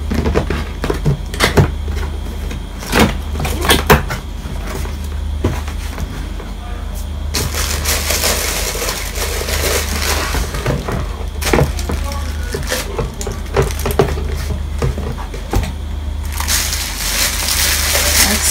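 A cardboard box being handled and opened: knocks and taps of the box in the first few seconds, then rustling and crinkling of the cardboard flaps and plastic wrapping. The crinkling grows louder near the end as the plastic-wrapped stove is lifted out. A steady low hum runs underneath.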